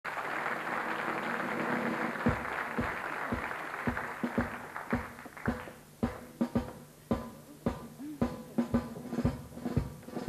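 Theatre audience applause fading out over the first five seconds while a drum kit starts a march beat, about two strokes a second, which carries on alone to the end.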